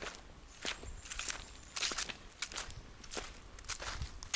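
Footsteps on dry leaf litter, a crackling step about every 0.6 seconds at a steady walking pace.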